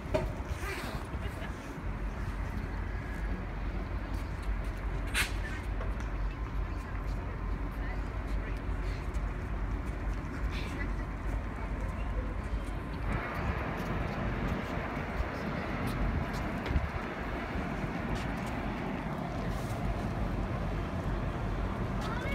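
Steady low rumble of a GO Transit diesel train standing at the platform with its doors open. About thirteen seconds in, the noise grows fuller and a little louder.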